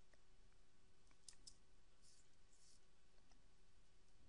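Faint clicks of a computer keyboard being typed on, a few keystrokes about a second in and a short soft rustle a little later, against near silence.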